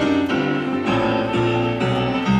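Electronic keyboard with a piano sound playing a rhythmic instrumental passage, a new chord struck roughly every half second.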